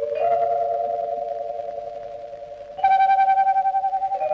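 Soft film background score: a few slow, held notes with a fast wavering tremolo, vibraphone-like, fading slowly between strikes. A new, louder note chimes in a little before three seconds in.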